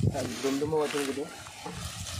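A man's voice making one drawn-out, wavering vocal sound lasting just over a second.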